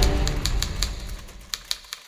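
Typewriter keys clacking, about five strokes a second, as background music fades out.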